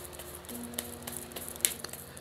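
Tarot cards handled in the hands, giving a few light clicks and rustles, over soft sustained background music.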